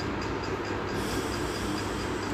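Steady background rumble and hiss, with a faint, high, regular ticking about four times a second.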